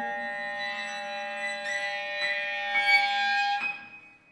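Contemporary chamber quartet of clarinet, violin, cello and piano holding several long, steady overlapping notes, with a few faint clicks in the middle. The sound stops abruptly near the end.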